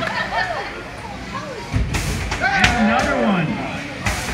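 Voices exclaiming around a beetleweight combat-robot arena, mixed with a few sharp knocks about two seconds in and again a little later as the flipper robot tosses its opponent across the floor.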